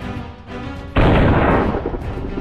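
Title theme music with a steady beat, cut into about a second in by a loud, sudden explosion sound effect that lasts about a second before the music resumes.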